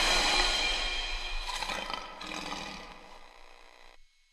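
A lion's roar as an intro sound effect, mixed with the tail of intro music and fading out over about three seconds.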